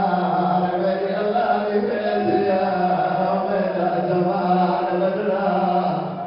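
A zakir's chanted recitation of masaib, the lament for the family of the Prophet. One man's voice is carried over a microphone in long, held, wavering notes without a break.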